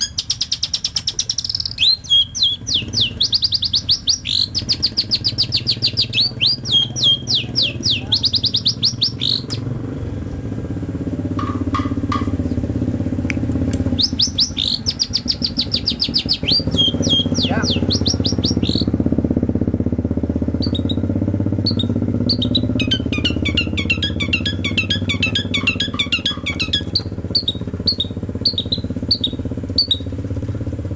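Long-tailed shrike giving runs of rapid, sharp, high chirps in bursts, then a busier chatter of shorter notes from about twenty seconds in. A low steady rumble runs underneath from about ten seconds in.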